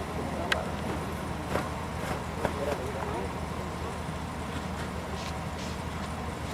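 Indistinct voices over a steady low hum, with a few sharp clicks in the first half.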